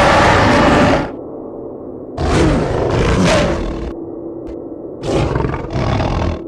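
Monster roar sound effects from an animated kaiju: three long roars, the first ending about a second in, the second starting about two seconds in and lasting nearly two seconds, and the third near the end in two pulses. A low steady drone runs beneath.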